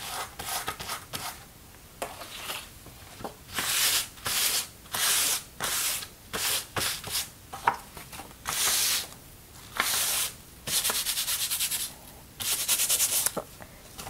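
A hand rubbing dried salt crystals off a salt-textured watercolor page: a series of short, scratchy strokes of palm and fingers across the paper, turning into quick, rapid back-and-forth rubbing in two spells near the end.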